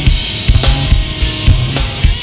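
Live rock band playing an instrumental passage: drum kit with bass drum, snare and cymbals under electric guitar.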